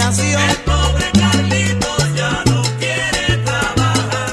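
Salsa band playing an instrumental passage without vocals: a bass line in held notes under a steady, dense percussion rhythm.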